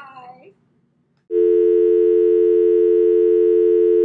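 Telephone dial tone: a steady, loud two-note tone that starts about a second and a half in, after a short spoken goodbye.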